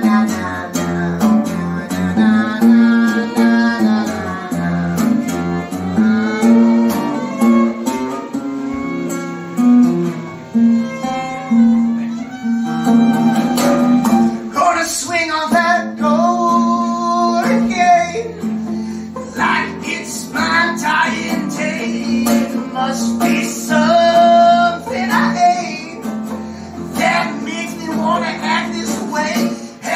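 Live folk music: acoustic guitar accompaniment with a fiddle (violin) playing a wavering melody line.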